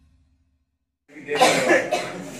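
About a second of near silence, then a person coughs loudly.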